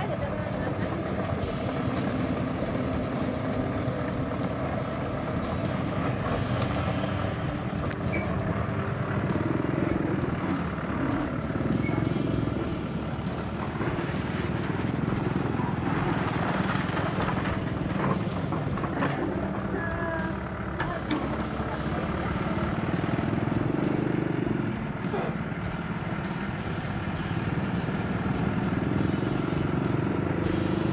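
Diesel engine of a Sumitomo S160 hydraulic excavator running close by while it digs. It runs steadily, its note rising and falling a few times as the machine works.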